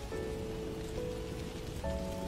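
Soft background music of a few held notes, changing chord twice, over a steady crackling of burning fire.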